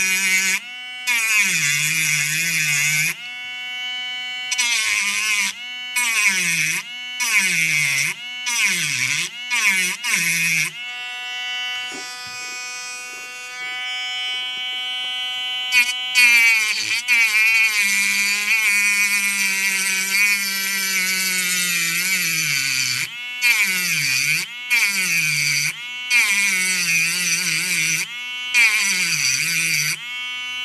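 Mini Dremel precision rotary cutter whining as its bit cuts along the edge of the metal shield on a phone motherboard, its pitch repeatedly dipping and recovering. It runs in bursts of about a second for the first ten seconds, softer and steadier for a few seconds, then in longer stretches.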